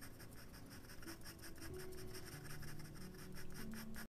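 Pencil scratching on paper in rapid short strokes, several a second, as fur is hatched in with quick repeated marks.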